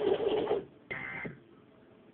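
Emergency Alert System test audio from a television: the loud broadcast sound cuts off about half a second in, then a short high-pitched electronic data burst sounds about a second in, typical of the EAS end-of-message signal.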